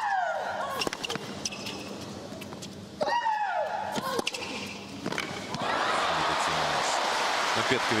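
Tennis rally: racket strikes on the ball, with a long shriek from a player on two of the shots, falling in pitch each time. Crowd applause and cheering break out about five and a half seconds in as the point ends.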